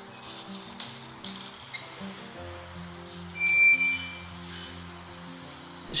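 Soft background music of held, sustained notes, with a few faint clicks. About three and a half seconds in comes a short, bright ding, the loudest sound, from a subscribe-button animation's sound effect.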